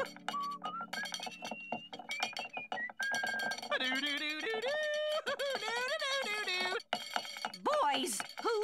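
A cartoon man's voice sings wordless, swooping notes, holding some long and gliding up and down, with light plucked-string music behind.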